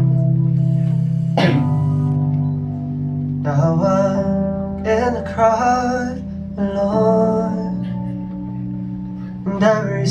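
Live electric keyboard playing a slow pop-song intro: sustained low chords, with a sharp struck chord about a second and a half in. A wavering melody line joins about three and a half seconds in.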